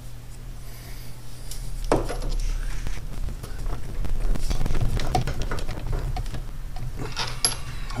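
Small metallic clicks, taps and scrapes of hand work at a car's sheet-metal firewall as a screw is worked in to fix a clutch-cable firewall adjuster, with a sharper scrape about two seconds in.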